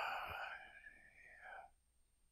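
The fading tail of a man's drawn-out hesitation "uh", trailing into a faint breathy murmur that cuts off about one and a half seconds in.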